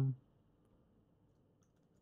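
The last syllable of a spoken word, then near silence with a few faint clicks.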